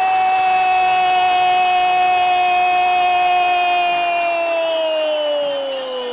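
A football commentator's long drawn-out "Goool!" cry, one loud held note that slowly falls in pitch over its last few seconds.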